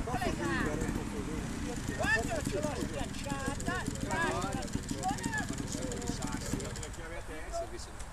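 Trials motorcycle engine ticking over at idle as a steady low rumble, with indistinct voices talking over it.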